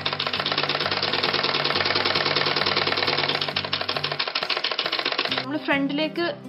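Domestic straight-stitch sewing machine running fast, its needle and feed making a rapid, even clatter as it stitches fabric, stopping about five and a half seconds in. Background music plays underneath.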